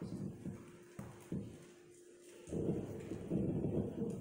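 Low, dull thumps and rustling of a cordless microphone being handled and passed to a reader, growing denser and louder a little past halfway, over a faint steady hum.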